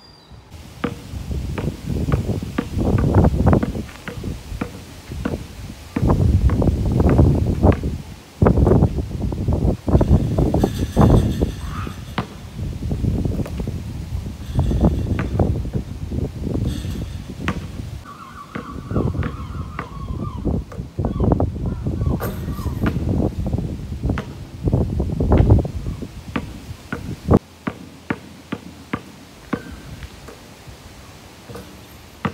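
A basketball bouncing again and again on a hard outdoor court as it is dribbled and shot at a hoop: many sharp thuds, sometimes in quick runs, over a rumbling background noise.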